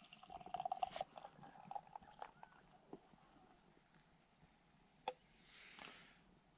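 Beer being poured from an aluminium can into a glass, faint gurgling and fizzing with small clicks for the first two seconds or so. After that it falls to near silence, with one sharp click about five seconds in.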